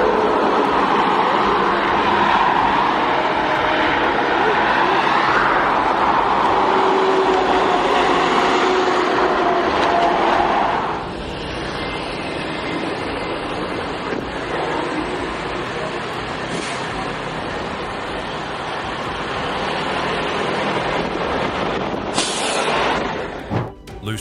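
Highway traffic noise, a loud steady rush with some engine drone, as a heavy-haul truck and the cars around it pass. About eleven seconds in it cuts to quieter steady road noise heard from inside a moving car, with a short hiss near the end.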